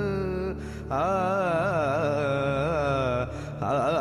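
A solo voice singing long, heavily ornamented notes that waver and bend in pitch, in an Indian devotional or classical style, over a steady drone. The voice breaks off twice for a moment, about half a second in and again near the end, while the drone carries on.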